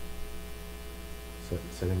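Steady electrical mains hum, a constant low buzz. A man's voice comes in about one and a half seconds in.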